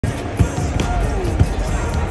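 Basketballs bouncing on a hardwood court during warm-ups, with two loud thumps about a second apart, over arena music and voices.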